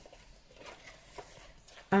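Near-silent room tone with a few faint, light clicks.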